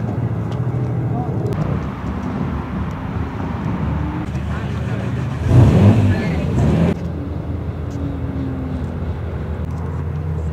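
Car engines running, with background voices. About halfway through, one engine grows louder for a second or so, its pitch sweeping down and back up.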